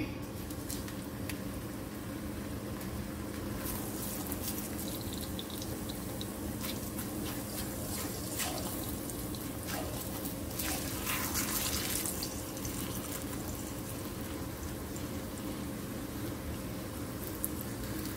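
Corn tortilla frying in hot oil in a skillet, a steady sizzle with many small crackling pops that are busiest in the middle and ease off near the end.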